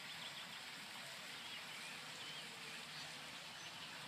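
Faint outdoor ambience: a steady low hiss with a few small birds chirping now and then.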